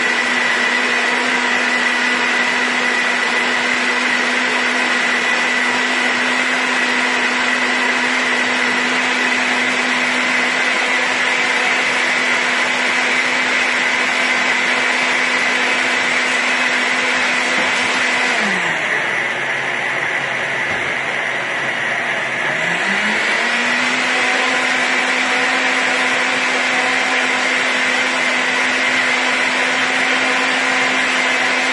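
NutriBullet Rx blender running steadily, blending fresh strawberries and lemon juice into a purée. About two-thirds of the way through, the motor's pitch sinks for several seconds, then climbs back to full speed.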